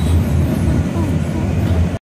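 Steady low rumble inside a moving passenger rail car, with faint voices under it.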